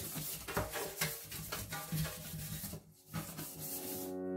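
Plastic scrubbing brush scrubbing a stainless steel sink coated in cleanser, in quick irregular rubbing strokes, with a brief break about three seconds in.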